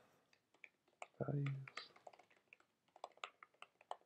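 Typing on a computer keyboard: a run of separate, faint key clicks, coming faster in the second half.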